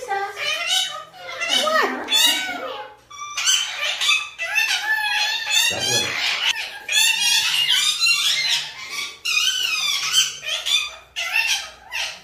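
Indian ringneck parakeets chattering and calling in a cage: a run of high, warbling, speech-like calls with short gaps between them.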